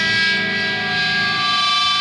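A single distorted electric guitar chord held and ringing steadily, the lead-in just before the band and shouted vocals come in on a punk rock song.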